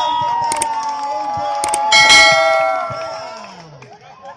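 Subscribe-button sound effect: a couple of mouse clicks, then about two seconds in a bright notification bell ding that rings out and fades over about a second and a half, over the tail of fading intro music.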